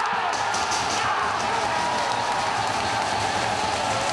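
Football stadium crowd cheering a home side's equalising goal: a steady wash of many voices with some sustained shouting.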